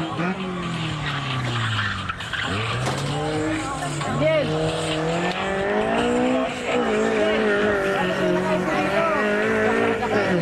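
A car's engine on a slalom run, its note falling and rising several times as it brakes and accelerates between the cones, then holding high near the end, with some tire squeal.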